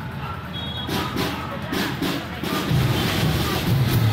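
High school brass band starting to play: a few sharp percussion strokes about a second in, then low brass horns enter near the end and the music swells, over crowd chatter.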